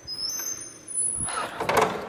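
Old wooden door being opened by its knob: a thin, high squeak in the first second, then a louder rushing noise near the end.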